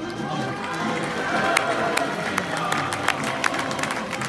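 Scattered applause: irregular hand claps over the murmur of a crowd.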